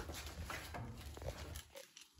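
Faint, irregular footsteps and scuffs on a debris-strewn concrete floor, with low handling rumble from the phone.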